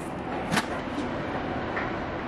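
Steady outdoor city background noise, with one sharp click about half a second in.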